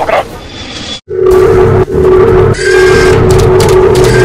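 Background music with a loud growling roar sound effect that cuts in after a brief silence about a second in and holds, with short breaks.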